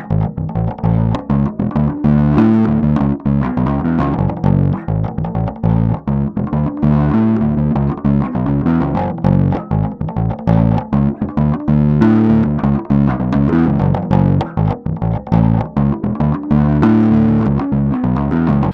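Spector Euro 5LE five-string bass guitar played through a GoliathFX IceDrive bass overdrive pedal, with the drive turned up, the blend brought down and the tone slightly lowered. It plays a fast riff of distorted notes throughout.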